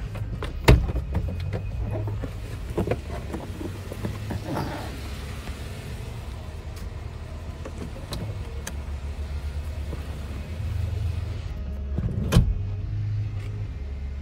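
Low, steady rumble inside a vehicle cabin, with scattered knocks and rustling handling noises. There is a sharp knock about a second in and another near the end.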